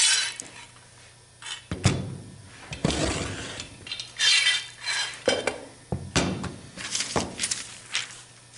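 Metal pipe clamps being set down and moved on a workbench: several sharp metal clanks and knocks, with rattling and scraping between them.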